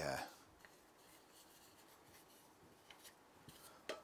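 Near silence: workshop room tone, with a few faint light ticks near the end.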